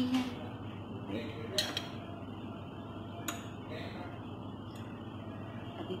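Metal cutlery clinking and scraping on a ceramic plate as spring roll filling is spread on the wrapper, with a few sharp clinks: one about a second and a half in, another just past three seconds. A steady low hum runs underneath.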